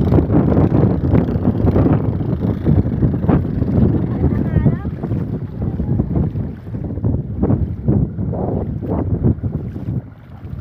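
Wind buffeting a phone microphone, with repeated splashes of feet wading through shallow seawater.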